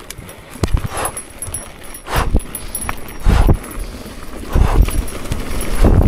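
Mountain bike rattling and clattering over a rough dirt and rock trail, with irregular heavy knocks and thumps about once a second as the bike hits bumps.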